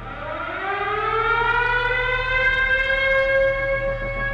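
Air-raid siren winding up: one wailing tone that rises slowly in pitch and grows louder, then levels off near the end.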